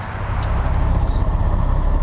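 Semi truck's diesel engine running with a steady low rumble, heard from inside the cab.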